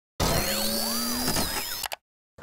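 Electronic intro sting: synthesized tones with several sweeping pitch glides that rise and fall over a steady buzzing hum. It starts just after the beginning and cuts off suddenly just before the end.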